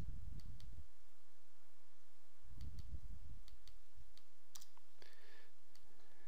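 Computer mouse clicking, a few scattered sharp clicks, with two brief low rumbles on the microphone, one near the start and one about halfway through.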